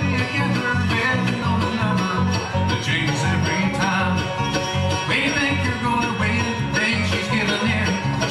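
Bluegrass band playing an instrumental passage live: banjo, mandolin and acoustic guitar picking together over a steady bass line that moves about twice a second.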